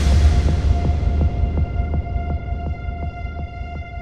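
Melodic techno DJ mix dropping into a breakdown. The track's highs fade away over about two seconds, leaving a deep bass hum and a held synth note over faint ticking about three times a second, and the music gradually gets quieter.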